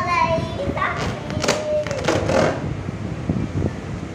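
A young child's high-pitched voice, vocalizing without clear words at the start and again around the middle, over a steady low rumbling and rustling noise.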